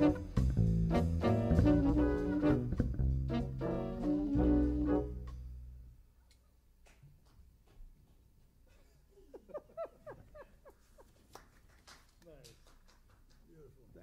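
Small jazz band of trumpet, tenor saxophone, trombone, piano, upright bass and drums playing the last bars of a tune, closing on a held note that dies away about halfway through. After that it is quiet, with faint off-mic talk.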